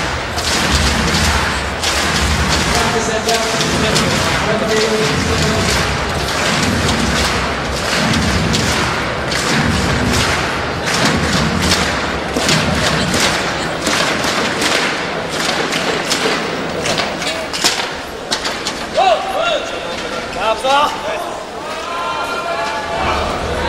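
Arena crowd: a steady din of many voices with frequent sharp claps or thumps, and a few shouted calls near the end.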